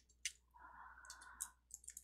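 Faint, scattered keystrokes on a computer keyboard as code is typed: a few soft, irregular clicks.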